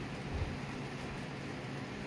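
Steady low background noise with a faint hum: room tone, with no distinct sound event.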